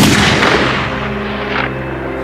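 A heavy explosion, like an artillery shell bursting, right at the start, its rumble dying away over about two seconds, with steady background music underneath.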